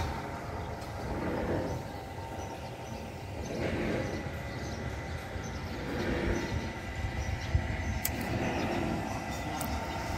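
Steady low rumbling outdoor noise with slow faint swells and a single brief click near the end, with no clear single source.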